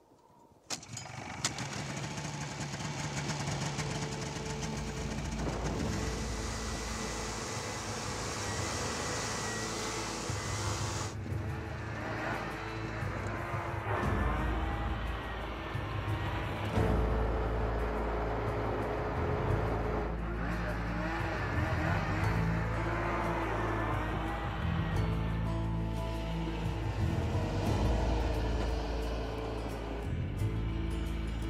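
Snowmobile engine running steadily as it travels, coming in about a second in, with music playing over it.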